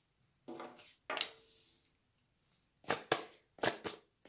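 Tarot cards being handled: drawn off the deck and laid down on the table. There are a couple of short soft rustles in the first half, then four quick sharp card snaps in the second half.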